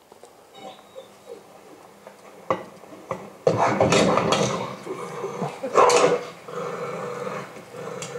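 A dog shut inside a car growling and barking at the window, guarding the car, heard played back from a video over loudspeakers. It is faint at first and gets much louder about halfway through, in rough, irregular bursts.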